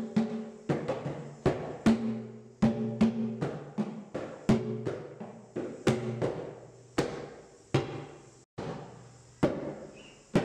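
Hand drums struck in a loose rhythm, about one or two strokes a second, low resonant ringing tones mixed with sharper slaps, each fading before the next. A split-second gap breaks the pattern near the end.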